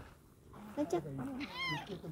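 Domestic tabby cat giving one short meow that rises and falls in pitch, about a second and a half in.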